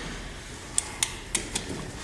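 A few light, sharp clicks, about four in a second, from a ratchet wrench working a brake caliper guide-pin bolt loose.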